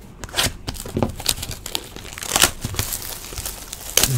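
Clear plastic shrink wrap being torn and crinkled off a sealed box of trading cards, in a run of irregular rips and crackles.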